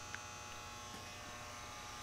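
Steady, faint electrical hum and buzz, with one faint tick just after the start.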